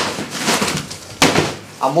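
A woven plastic mat rustling as it is spread out over a tiled floor, then one sharp slap about a second in, followed by a man's voice at the end.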